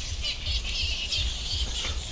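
Birds chirping in the background, with irregular low rumbling bumps on a handheld clip-on microphone.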